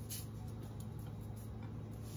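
Faint light ticking of seasoning being shaken from a plastic shaker onto raw chicken thighs and foil, over a steady low hum.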